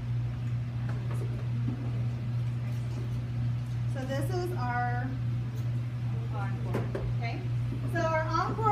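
Scattered, indistinct talk from women in a small room over a steady low hum.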